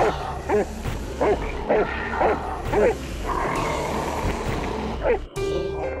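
Dogs barking, about six barks roughly half a second apart in the first three seconds and one more near the end, over a steady music score with held tones.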